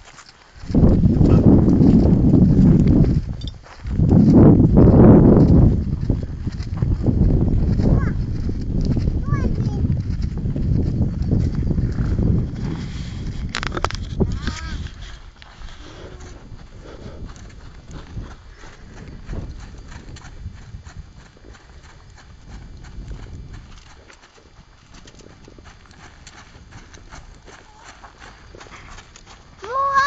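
Horse's hooves clopping on gravel as it walks. For about the first fifteen seconds a loud, gusty low rumble of wind on the microphone covers it, breaking off briefly a few seconds in; after that the hoofbeats are faint.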